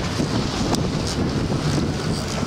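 Wind buffeting the microphone over the steady rumble of a sportfishing boat and water splashing along its hull.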